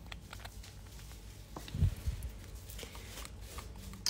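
Small handling noises from a bottle of black stamping nail polish: light clicks and scrapes as it is handled and opened, with one dull thump against the table about two seconds in.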